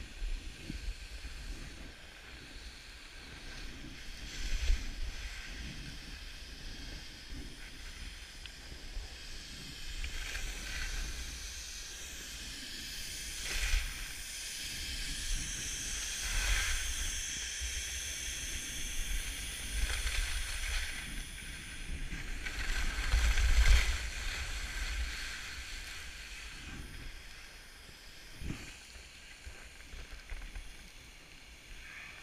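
Skis hissing and scraping over groomed snow on a downhill run, swelling several times, loudest a little before the end, with wind rumbling on the microphone underneath.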